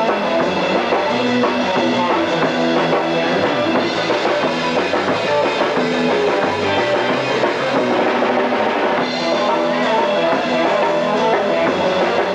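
Rock band playing live with no singing: drum kit, electric guitars and bass in a loud, steady rock instrumental.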